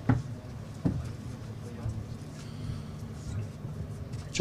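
Two sharp knocks a little under a second apart as the lectern microphones are handled, over a steady low hum and faint murmur of voices from the people around.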